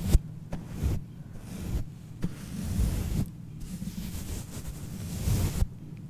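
A fluffy makeup brush sweeping over a microphone's metal mesh grille, heard close up as a series of uneven brushing strokes with a low rumble.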